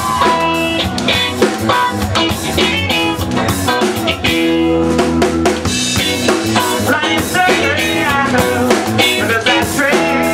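Live rock band playing a song: a drum kit with snare and bass drum hits driving the beat under electric guitar.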